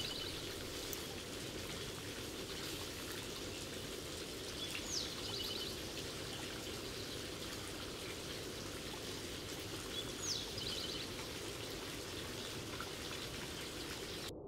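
Outdoor ambience: a steady soft hiss with a songbird repeating one short phrase about every five seconds, a high whistle sliding down followed by a quick trill.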